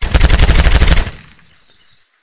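Burst of rapid automatic gunfire, about a second long, then fading away: a dubbed gunshot sound effect laid over an airsoft rifle being fired.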